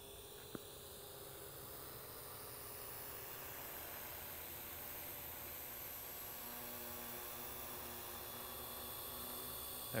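Faint steady hum of a quadcopter's electric motors and propellers: several steady tones with a high whine slowly rising in pitch, growing slightly louder. A small tick about half a second in.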